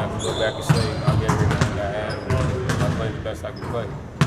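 Basketballs bouncing on a court floor, many irregular thuds from more than one ball, with indistinct voices in the background.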